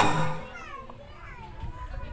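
A pause in a folk song: the singing and accompaniment cut off right at the start, leaving faint background chatter of children and other voices in the audience.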